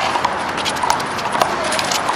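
Sharp irregular smacks and shoe scuffs of a one-wall handball rally, several a second: the ball struck by hand and off the wall, with players' sneakers on the court.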